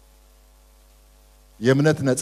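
A faint, steady electrical hum, a mix of several constant low tones, fills a pause in a man's speech. His voice comes back in near the end.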